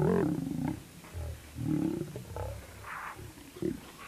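Distorted playback sound from a failing VHS tape: warbling, voice-like sounds come in short bursts, with their pitch bending and smeared out of shape. It is the sign of a damaged or worn tape or a faulty VCR.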